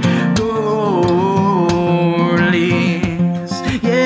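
Acoustic guitar strummed in a steady rhythm under a man's voice holding one long sung note, which slides down within the first second and then holds until near the end.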